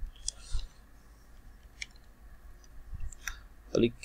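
Computer keyboard keys being typed: a handful of light, separate keystroke clicks spread irregularly over a few seconds.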